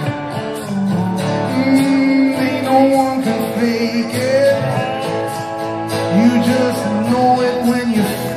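Live rock band playing: a man's voice singing a slow melody over guitars and band.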